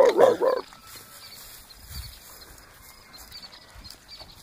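Young lioness vocalising: a loud, wavering, pitched call that stops about half a second in. Afterwards only faint low sounds remain.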